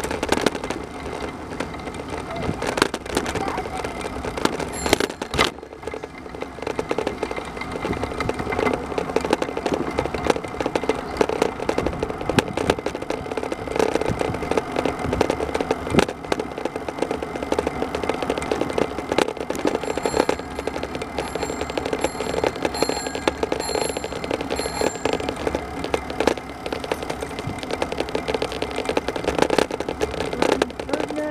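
Wheels rolling over an asphalt path: a steady, dense rattle and rumble. About two-thirds of the way through, a quick run of about seven short, high pings.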